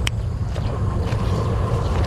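Wind buffeting the microphone, a steady low rumble with a short click right at the start.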